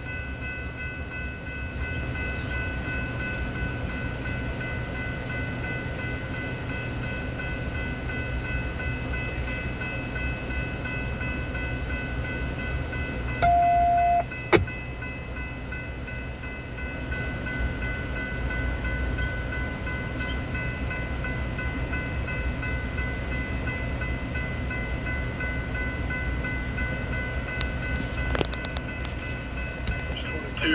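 Union Pacific diesel-electric locomotives idling: a steady low rumble with a constant high whine over it. About halfway through there is a single short beep, followed by a sharp click.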